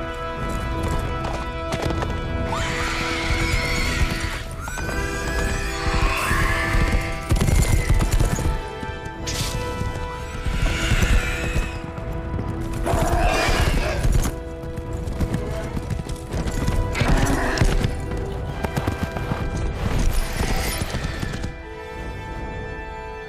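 Film soundtrack of a horseback chase: galloping hooves and several shrill whinnies over a loud orchestral score.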